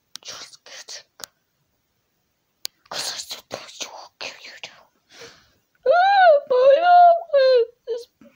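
A high-pitched voice making breathy whispered noises in short bursts, then, about six seconds in, loud drawn-out wailing cries that bend up and down in pitch, several in a row.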